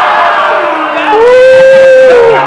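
Crowd of men shouting and hollering in reaction to a battle-rap punchline, many voices at once, with one voice holding a long shout from about a second in.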